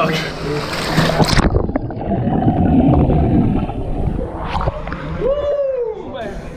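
Water splashing as a man ducks himself under in a hydrotherapy plunge pool, then muffled churning and bubbling with the microphone under water, the high end cut off suddenly about a second and a half in.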